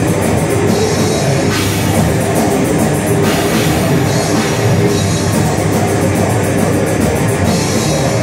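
Heavy metal band playing live: loud drum kit with fast, rapid strikes and distorted guitar in one dense, unbroken wall of sound.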